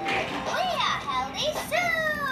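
Young children's high-pitched, wordless voices: several short rising-and-falling calls and squeals, then one longer falling call near the end.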